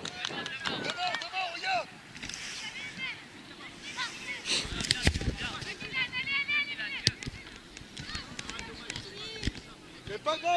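Children's high-pitched shouts and calls to one another, with a gust of wind on the microphone about four and a half seconds in and a sharp knock about seven seconds in.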